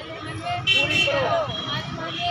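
A group of voices shouting a protest slogan together, loud from about two-thirds of a second in, over faint street traffic.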